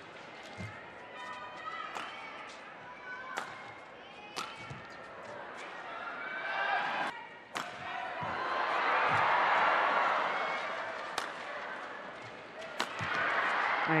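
A badminton rally: a shuttlecock is struck by rackets in sharp cracks roughly a second apart, with court shoes squeaking on the mat between shots. The rally ends about eight seconds in, and a crowd cheers and applauds, swelling to its loudest about two seconds later and dying away.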